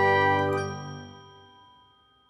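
A ringing chime chord from an advertisement jingle, held and then fading out over about a second and a half.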